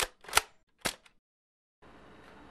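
Gunshot sound effect: three sharp shot-like cracks within about a second, the second the loudest.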